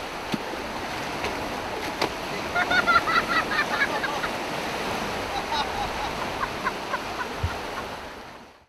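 Sea surf washing onto a beach, with water splashing as a person in snorkel gear wades in and flops into the shallows. A quick run of short high-pitched sounds comes about three seconds in, and a single low thump comes near the end.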